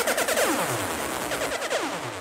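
Electronic sound effect over a sound system: a series of synthesized sweeps, each falling steeply in pitch, the laser or dub-siren style effect fired in a dancehall sound clash.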